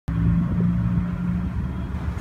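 Low, steady engine rumble with a constant hum, like a motor vehicle running close by.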